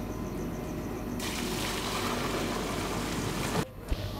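Curdled milk, whey and paneer curds, pouring out of a large aluminium pot in a steady gush. It starts about a second in and cuts off suddenly near the end, followed by a single sharp knock.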